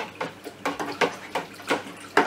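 Honey-water mead must in a plastic fermentation bucket being vigorously stirred to mix in the yeast and aerate it: rhythmic sloshing strokes, about three a second.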